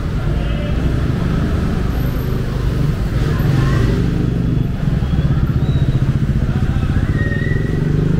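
Small motorcycles and scooters pass close by at low speed, their engines running with a steady low rumble that pulses faster in the second half, over idling car traffic.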